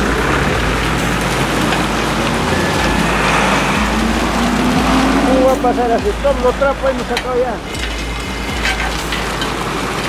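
Steady rushing and churning of sewage water in a sewer manhole, a loud even noise, with voices faintly in the background around the middle.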